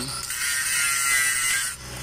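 Angle grinder grinding a weld seam on a large steel pipe: a steady high whine with a grinding hiss, dipping briefly near the end.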